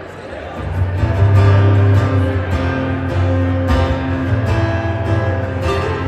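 Acoustic guitars strumming the instrumental intro of a country song, played through a stage PA. The guitars come in and swell to full level about a second in, with steady strummed chords and strong low notes.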